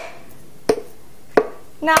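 Hammer striking the hard shell of a mature coconut held in the hand: two sharp knocks less than a second apart, as the shell is cracked open around its middle.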